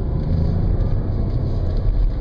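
Audi S4 heard from inside the cabin while cornering on a track: a steady low engine and road drone with a faint held tone above it.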